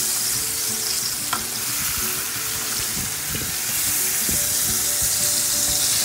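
Flour-coated pork chops sizzling steadily as they fry in shallow oil in a pan, with a few light knocks as they are handled.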